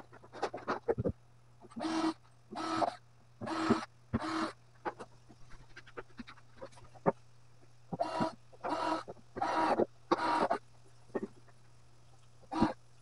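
Honking bird calls in groups of three or four, evenly spaced, each call short and pitched, with a few light knocks in between.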